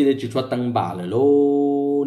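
A man's voice singing in a chanting style: a few short sung syllables, then one note that rises and is held steady for most of the last second.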